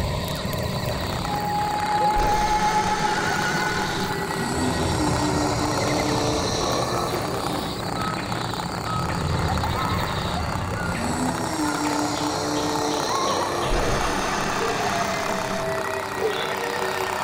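Eerie horror background score: a low rumbling drone with long held notes that swell in and fade out.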